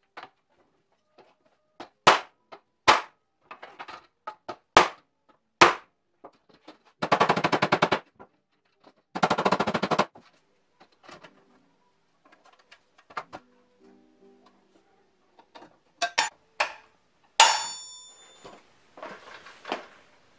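A bent bathroom scale being opened and straightened by hand in a clamp: a string of sharp plastic and metal clicks and knocks, two bursts of rapid rattling clicks about seven and nine seconds in, and a metallic clang with ringing near the end.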